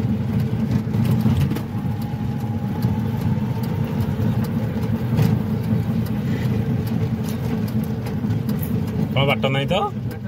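Cabin noise of a moving Piaggio Ape E-City FX electric three-wheeler: a steady low road rumble from the tyres on a rough rural road, with small rattles and knocks from the body. A faint whine comes and goes in the first half.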